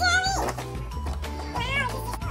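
Background music with steady low sustained notes, and a little girl's short, high-pitched, wordless squeals at the start and again about one and a half seconds in, gliding up and down in pitch.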